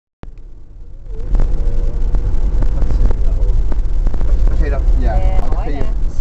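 Low, steady rumble of a car's engine and road noise heard from inside the cabin, with people starting to talk over it near the end.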